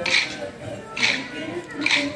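Kolatam sticks struck together by a group of dancers: a ragged burst of wooden clacks about once a second, three times, in time with a sung folk tune.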